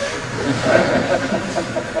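Indistinct voices in a gymnasium, echoing over a steady hiss of room noise.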